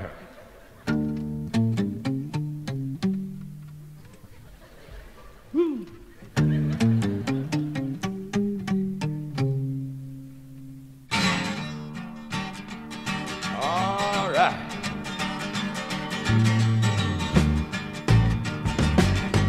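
Live guitar solo: a run of single plucked notes that rings out and dies away, then a second run of notes. About eleven seconds in, the full band comes in with a dense, loud sound.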